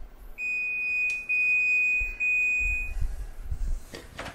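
Electronic timer alarm of a stainless-steel wall oven sounding a steady high beep for about two and a half seconds, signalling that the cooking time is up.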